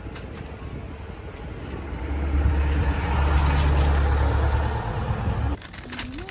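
A motor vehicle's engine hum going by close at hand. It grows louder over a couple of seconds and is loudest around three to four seconds in, then cuts off suddenly near the end.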